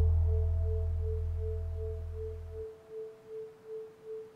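Meditation music thinned to a single pulsing tone at the 432 Hz base pitch, beating about two to three times a second. A low drone fades out and stops about two thirds of the way in, and a fainter higher tone dies away soon after.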